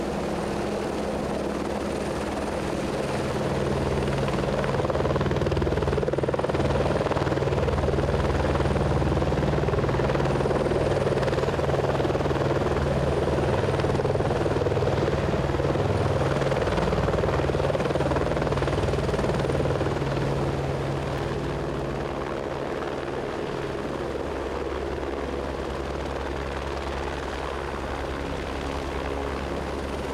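Helicopter hovering low, its rotor and engine running steadily. The sound grows louder a few seconds in and eases off after about twenty seconds.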